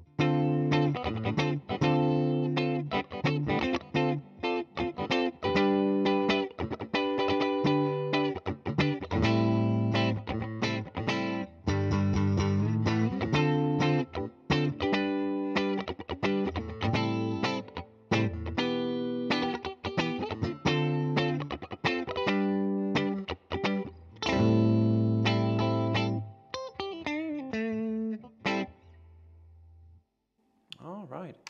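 Gibson SG Special Faded electric guitar played through an amplifier, with both pickups on and the bridge pickup's tone and volume rolled back a little: a steady run of picked single notes and short phrases. It ends on a held note that dies away near the end.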